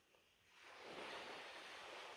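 Near silence with a faint, steady hiss of the sea, fading in about half a second in.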